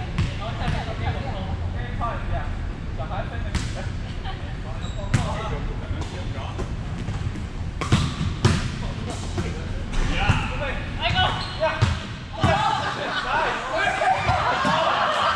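Volleyballs being struck by hand and landing on a hardwood gym floor: a series of sharp smacks a second or two apart, in a large echoing sports hall, with players' voices.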